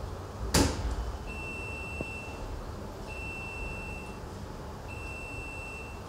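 A thump, then an electronic beep sounding three times, each about a second long, steady in pitch and evenly spaced.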